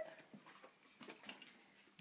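Near silence, with only faint rustles and small ticks scattered through it.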